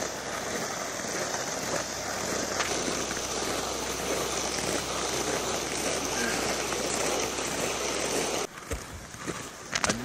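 Steady scraping hiss of loaded toboggans sliding over snow as they are hauled, which cuts off abruptly about eight and a half seconds in and gives way to a few quieter knocks.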